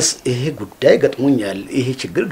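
Speech only: a man talking in Amharic dialogue.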